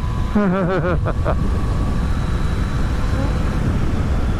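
Steady low rumble of a Yamaha Tracer 900 GT's three-cylinder engine with wind and road noise, cruising at a constant speed. A person laughs during the first second or so.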